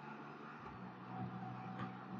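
Faint, steady engine hum and road noise from a Can-Am Spyder RT Limited three-wheeler cruising along.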